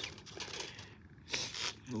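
A few short rustling and handling noises as a small weight is set against a pole to hold it in place, with hair brushing close to the microphone.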